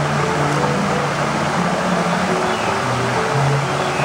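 Waterfall cascading over rocks into a stream, a steady rushing, with soft background music underneath.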